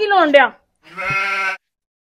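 A brief burst of speech, then a short bleat about a second in that lasts under a second.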